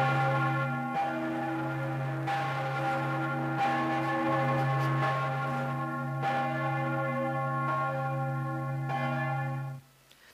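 Large 4,500 kg church bell, the 'Salzburgerin' cast by Jörg Gloppitscher, swinging and ringing. The clapper strikes about every 1.3 s over a deep, lingering hum, and the ringing cuts off suddenly near the end.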